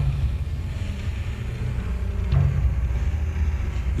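A low, steady rumbling drone with a faint hum in it.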